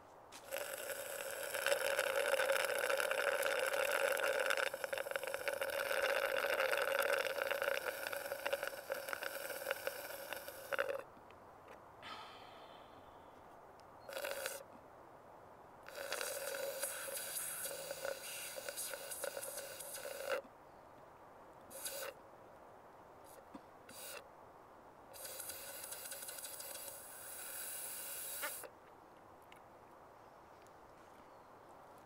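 A person slurping and gulping a drink from a plastic cup: one long draw of about ten seconds, then several shorter ones with pauses between.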